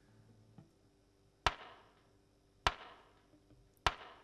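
Three sharp clicks, evenly spaced a little over a second apart, in a quiet room: a count-in just before the band starts playing.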